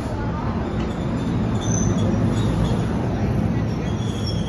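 NJ Transit Multilevel coaches rolling past at a platform as the train arrives, with a loud steady rumble of wheels on rail. Faint high squeals from the train start about a second and a half in as it slows.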